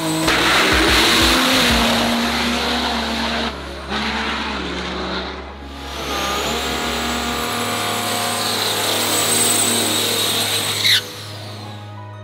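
Race-built Cummins diesel pickup drag trucks launching down the strip, with loud rough engine and tyre noise, mixed over a music track that holds steady bass notes. The loudness dips twice briefly and drops off sharply about eleven seconds in.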